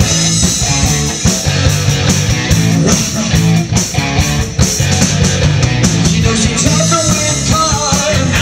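Live rock band playing loud, electric guitar, electric bass and drum kit together with a steady beat, in a stretch without vocals.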